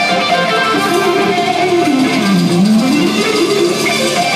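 Rock band playing live, electric guitars to the fore over a full band. Around the middle one note slides down in pitch and back up again.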